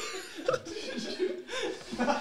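A man chuckling in short, irregular, fairly quiet bursts of laughter.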